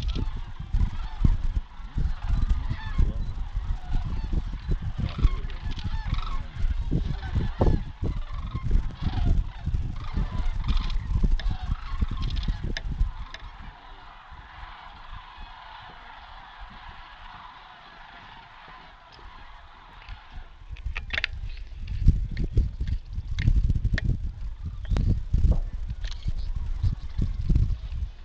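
Many sandhill cranes calling together in a steady chorus, with a heavy low rumble of wind buffeting the microphone; the rumble drops out for several seconds midway, leaving the crane calls on their own.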